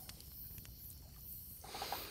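Quiet outdoor ambience of a small wood campfire burning, with a few faint crackling ticks.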